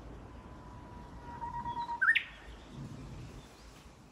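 Japanese bush warbler singing its full, well-formed hō-hokekyo song: one long steady whistle that swells, then a quick rising flourish about two seconds in.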